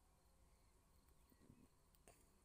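Near silence: faint outdoor background, with one small brief sound about one and a half seconds in.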